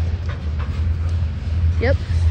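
Freight train of covered hopper cars rolling past close by: a steady low rumble of wheels on rail.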